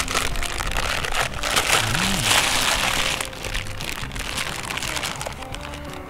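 Soft instrumental background music, with a plastic food bag crinkling and rustling as it is handled, loudest in the first three seconds.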